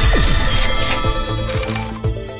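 Video slot game's electronic soundtrack music with a win sound effect as a small win is paid out, including a falling tone just after the start.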